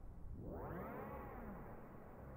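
Quiet live synthesizer music: a sweeping tone swells in about a third of a second in, arcs up and back down in pitch over about a second, and fades back into a low, steady bed.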